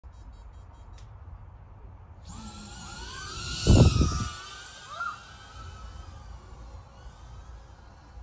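Emax Tinyhawk 3 ducted-prop micro FPV drone's brushless motors whining in flight, several wavering high pitches gliding up and down as the throttle changes. It comes in about two seconds in, is loudest with a deep rush about four seconds in as it passes close, and fades toward the end.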